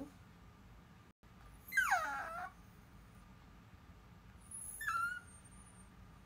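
An animal's short whine falling in pitch about two seconds in, then a fainter, higher squeak about five seconds in.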